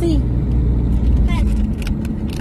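Steady low rumble of a car's engine and road noise heard from inside the cabin while driving.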